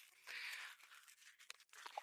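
Near silence, with a faint short hiss in the first half second and a few faint ticks after it.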